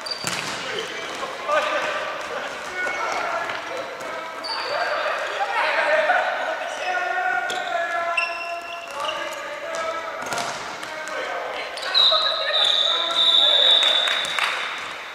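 Futsal in an echoing sports hall: players calling out, sneakers squeaking on the wooden floor, and the ball thudding off feet and floor. Near the end a high, steady tone holds for about two seconds.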